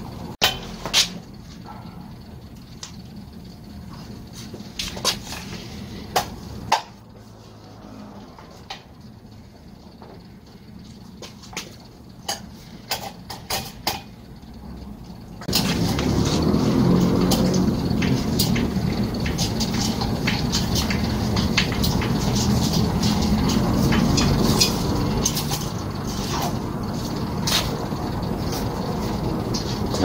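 Light clicks and knocks of metal fittings as the pressure switch and valve assembly is twisted off the tank of an oilless air compressor by hand. About halfway through, a louder steady low noise sets in suddenly and continues.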